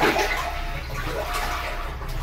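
Top-loading washing machine agitating a full tub with the lid closed: steady water churning and sloshing that starts abruptly at the beginning.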